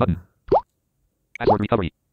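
Android screen-reader audio cues from a phone: a short rising tone about half a second in, then near the end another rising tone that runs into a brief clip of synthetic voice, as the reading focus moves to a new item on the screen.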